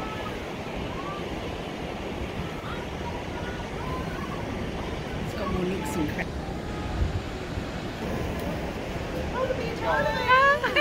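Steady wind rushing and buffeting over the microphone on an open ship balcony, with faint voices of people chatting in the background.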